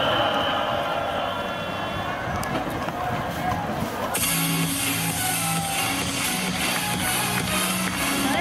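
Baseball stadium crowd chanting and cheering. About four seconds in, music suddenly starts up loudly over the crowd, with long held notes.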